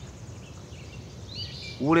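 Quiet outdoor ambience: a steady low background hiss with a few faint, high bird chirps about one and a half seconds in.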